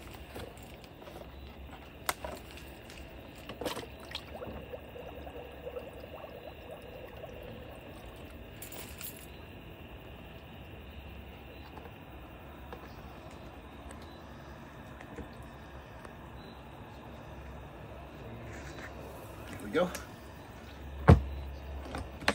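Scattered clicks and knocks of hard plastic as a fog machine is lifted out of a plastic tool-box housing and a mist unit is set in, over a steady low hum and faint steady insect chirping. A loud snap near the end as the box lid is shut.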